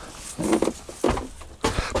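Footsteps climbing the entrance step into a motorhome and onto its floor, with a few thumps of feet landing, the last ones near the end.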